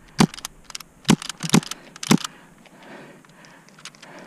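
Sharp cracks and clicks from an airsoft skirmish: about a dozen in the first two and a half seconds, four of them loud, then a few faint ticks near the end.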